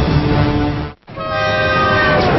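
A train rushing past, its horn sounding one long steady blast from about a second in, after a brief break in the sound.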